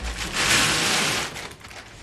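Baking parchment being pulled off its boxed roll and torn off: a paper rustle lasting about a second, which fades near the end.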